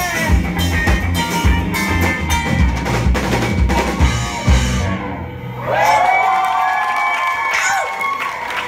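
Live indie rock band playing, with drum kit, electric guitars and bass. About halfway through the drums stop, and a held chord rings out, wavering in pitch, as the song closes.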